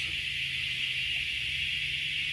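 Steady high-pitched drone of insects, with a faint low hum underneath.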